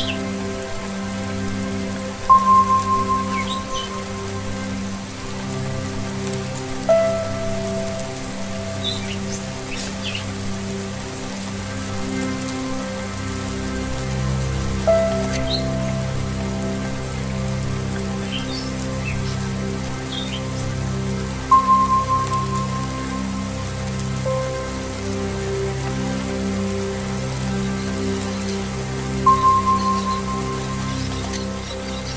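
Tibetan singing bowl tones struck about every five to seven seconds, each ringing out and fading, alternating between a higher and a lower pitch over a low sustained drone. Steady rain falls throughout, with occasional short bird chirps.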